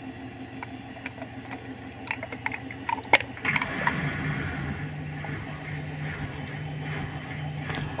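Hotpoint Ariston front-loading washing machine spinning at full speed, a steady machine hum with scattered faint clicks. About three and a half seconds in, the hum grows louder and deeper and holds steady.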